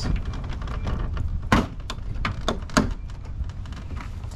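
Plastic bumper trim panel of a GMC Canyon being pried loose by hand: a series of sharp clicks and snaps as its clips let go, loudest about a second and a half in and again near three seconds.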